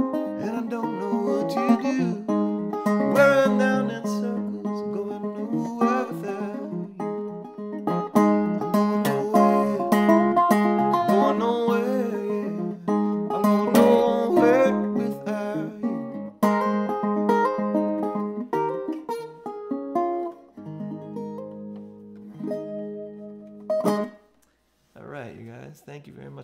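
Acoustic guitar played with a pick, a lively run of single notes and chords in a folk-blues tune. About 20 seconds in it settles on a held chord that rings for a few seconds and then stops suddenly.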